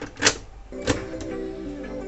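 A cassette pushed into the boombox's tape deck and the plastic cassette door clicked shut: two sharp clicks, the first about a quarter second in and the louder of the two. Music from the Walkman plays through the boombox speakers via the new AUX input, coming up steadily after the second click.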